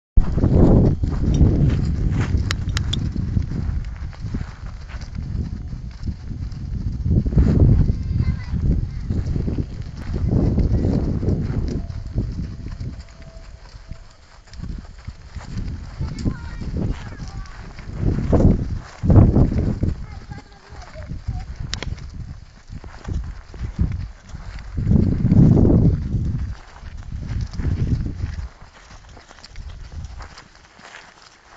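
Horses' hooves on a gravel arena as several horses trot past, under repeated low rumbling swells that come and go every few seconds.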